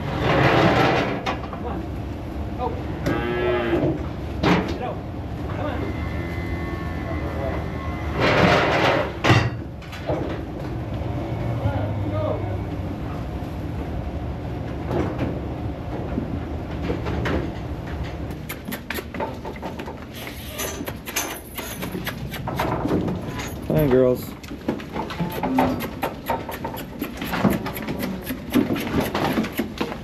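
Young dairy cattle mooing several times while they are penned and moved, with a loud burst of noise about eight seconds in and scattered knocks and rattles through the second half.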